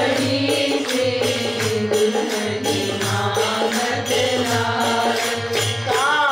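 A woman singing a devotional Hindi bhajan verse in long, gliding phrases, accompanied by a harmonium and a steady percussion beat.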